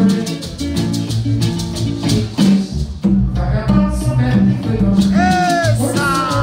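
Live Haitian twoubadou music: acoustic guitar and hand drum under a steady, even shaking of maracas, with a low line of notes underneath. A voice sings a short phrase near the end.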